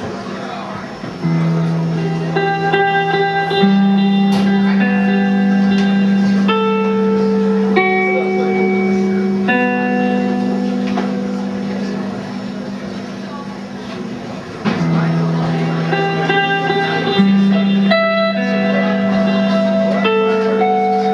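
Electric guitars playing slow, sustained notes over a low droning bass note that shifts pitch every few seconds. Higher notes ring out one after another, each held for a second or two. The sound swells about a second in and again near three-quarters of the way through.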